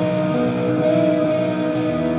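Electric guitar played through the Audio Assault Shibalba amp sim on its clean channel, with distortion pedals, chorus, delay and reverb, in a shoegaze part. The notes are held and blend together, and the chord changes about a third of the way in.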